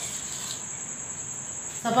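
A steady high-pitched insect trill runs without a break through a pause in the talk.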